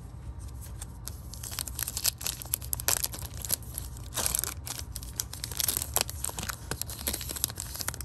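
Foil wrapper of a Panini Prizm football card pack being torn open and crinkled: an irregular run of crackling tears and crinkles, loudest in flurries through the middle.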